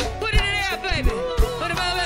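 Live go-go band playing: a woman sings lead with sliding, held notes over electric bass, guitar and drums, with drum hits landing on a steady beat.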